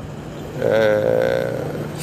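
A man's voice holding one drawn-out hesitation sound, like a long "ehh", for about a second, starting just after the first half second and fading out before the talk resumes. A steady low hum runs underneath.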